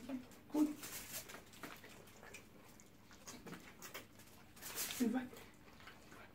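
Quiet eating sounds: faint scattered clicks and a short rustle of fingers picking fish from a foil tray, between two short spoken words.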